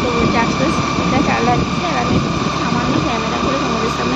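A motor scooter running along the road, heard from the pillion seat, with a dense steady rush of road and wind noise.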